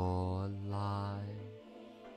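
A man's voice drawing out a word slowly in a flat, chant-like monotone, trailing off about one and a half seconds in.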